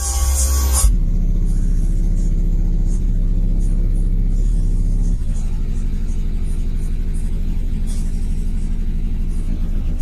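Bass-heavy music played loud on a car audio subwoofer system, heard inside the truck's cab, with a strong, deep bass line and steady low notes. A bright, full-range burst in the track's sound comes in the first second, and the deepest bass drops away about five seconds in.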